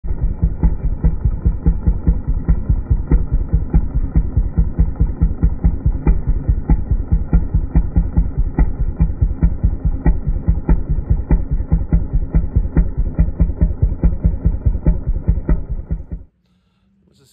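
Vintage chainsaw engine idling with a steady, loping pulse about five times a second, sounding dull and muffled.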